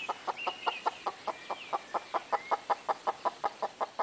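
Chickens clucking softly in a fast, even series, about seven or eight clucks a second, with a faint thin high call drawn out above them now and then, as the hens settle to roost in a tree for the night.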